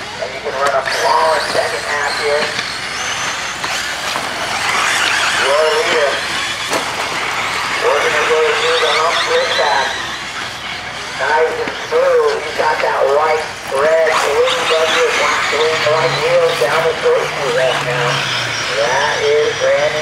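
Electric 1/8-scale RC buggies racing on a dirt track, their motors whining and rising and falling in pitch with the throttle over a steady hiss of tyres and dirt. A race announcer's voice over the loudspeakers runs through it, muffled.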